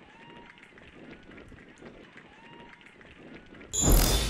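Faint open-air soccer-field ambience with a couple of brief distant calls. Near the end, a loud whoosh with a deep bass hit: a broadcast graphic transition sound effect.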